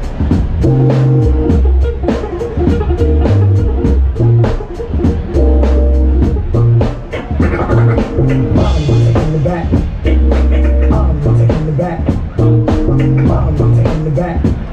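Live instrumental hip-hop/jazz band playing a groove: drum kit, a repeating deep electric bass riff, guitar and keyboard chords.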